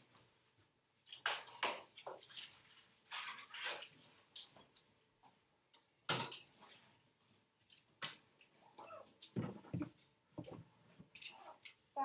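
Irregular rustles, knocks and shuffles of students packing bags and moving about a classroom. Near the end a backpack brushes close past the microphone.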